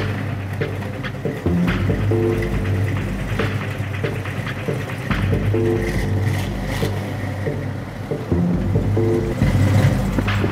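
Music with a deep bass line and drum hits, a short chord figure coming back every few seconds.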